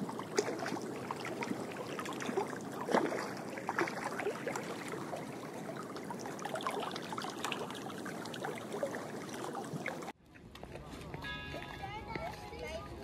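Water lapping gently at a rocky lakeshore, with irregular small splashes and ticks over a steady wash. About ten seconds in it cuts off suddenly and gives way to outdoor crowd ambience with faint voices.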